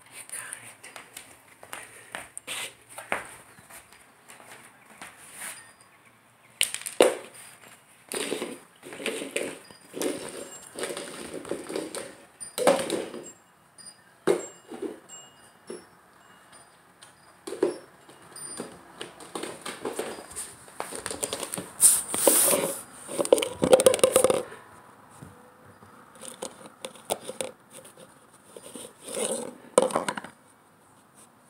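A border collie puppy moving about on a hardwood floor, with irregular clicks, scrapes and knocks as it paws and noses at things. A louder run of knocks comes about two thirds of the way in, and near the end it paws at a clear plastic tub.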